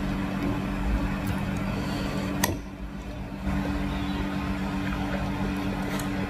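Eating at a ceramic bowl of noodle soup: a metal fork working in the bowl, with one sharp clink about two and a half seconds in, over a steady low hum.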